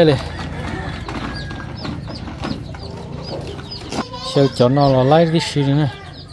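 Chickens in a yard: a run of short, high chirps repeating every fraction of a second, with a louder wavering, warbling call about four and a half seconds in.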